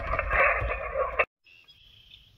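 Yaesu FT-891 HF transceiver's speaker hissing with receiver band noise on upper sideband, a steady rushing static held to a narrow voice-range band, over a low rumble. It cuts off abruptly a little over a second in, leaving only a faint background.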